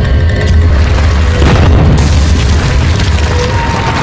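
Cinematic sound effects for an animated logo intro: a deep rumbling boom under music, with a crash of breaking stone about a second and a half in as the wall bursts apart.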